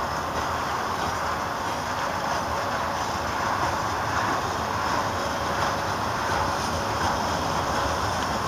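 Freight cars of a mixed freight train, boxcars and tank cars, rolling past: a steady noise of steel wheels running on the rails.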